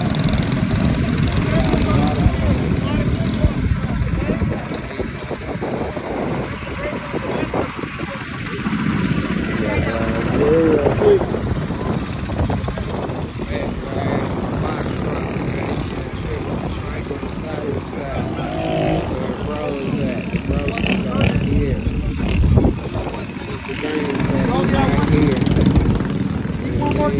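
Small mini bike engines running, with people talking.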